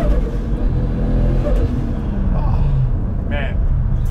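Toyota Supra's straight-six engine running, heard from inside the cabin while driving, its pitch falling about two seconds in as the revs drop. It ends with a short "woo-hoo" shout.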